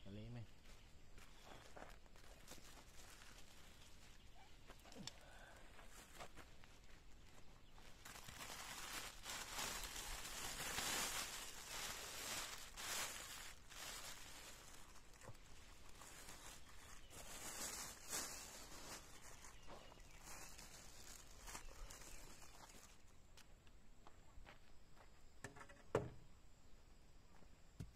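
Plastic bags and sacks around potted bougainvillea rustling and crinkling as they are handled, loudest in the middle. There is a short voice right at the start.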